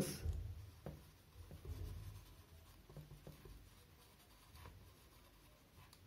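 Felt-tip marker writing on a whiteboard: faint scratching strokes with a few light ticks as the letters are formed.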